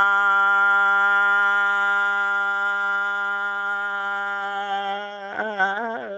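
A singer's voice holding one long, steady note for about five seconds, then a brief wavering turn near the end before settling on another held note.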